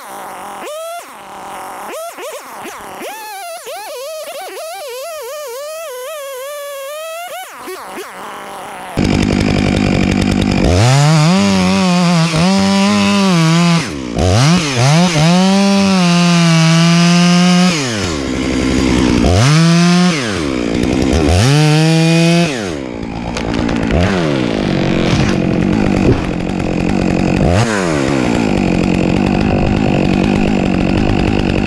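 Stihl MS 661 chainsaw, a big two-stroke felling saw, making the felling cut in a grand fir trunk that is hollow and punky inside. It runs lighter for the first several seconds, then about nine seconds in it goes to full throttle in long bursts, its pitch sagging under load and rising between them until about 23 seconds.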